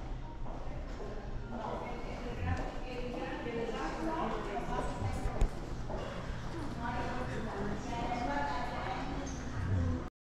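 Indistinct talking, with footsteps on a hard stone floor and a few thumps, the loudest about halfway through.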